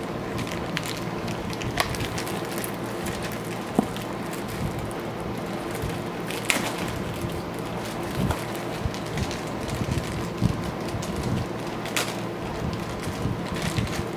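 Foil blind bag crinkling and rustling with scattered small crackles as it is handled and opened.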